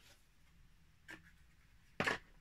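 Near silence with one brief rustle of handling about a second in, as a portable Bluetooth speaker is moved over its clear plastic packaging tray.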